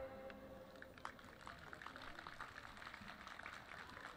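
A bowed string trio's last note dies away at the very start, leaving faint open-air crowd ambience with scattered small clicks and a low hum.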